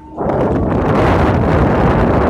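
Wind buffeting a phone's microphone at the top of a telecom tower: a loud, even rushing that sets in just after the start.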